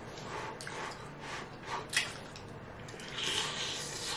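Close-miked chewing and lip smacking of sticky, sauce-coated barbecue chicken wings: irregular wet mouth noises with a sharp smack about two seconds in.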